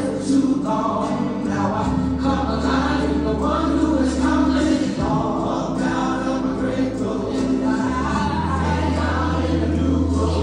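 Gospel song: a choir singing over long held bass notes that change every few seconds.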